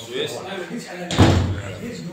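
A single sudden loud bang a little past a second in, dying away within about half a second, over quiet talk.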